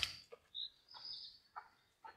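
Faint bird call: a thin, high whistle that rises briefly and then holds for about a second. A few faint soft knocks or rustles sound under it.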